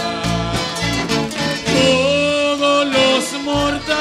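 Live worship song in Spanish: a woman sings the lead through a microphone and PA over instrumental accompaniment with a steady beat. She holds one long note with vibrato in the middle.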